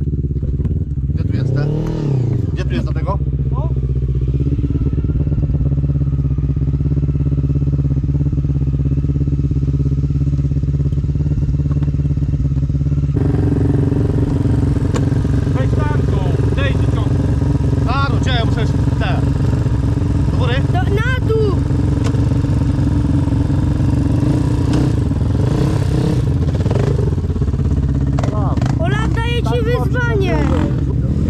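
A sport quad's engine running steadily after a jump start from a car's battery, revved up and back down once about two seconds in. The engine note changes abruptly about halfway through.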